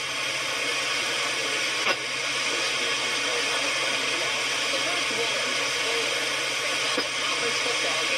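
AM broadcast station on 880 kHz played through a software-defined radio receiver, mostly steady hiss and static with a newscaster's voice faint beneath it: a weak signal picked up by a small tuned loop antenna. A single click about two seconds in.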